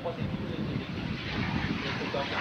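Twin JetCat P200 turbines of a jet-powered Cri-Cri flying overhead: a steady, broad jet noise, with faint voices in the background.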